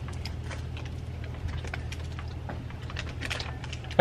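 Irregular light crackles and clicks of a paper sandwich wrapper being handled while eating, over a steady low hum.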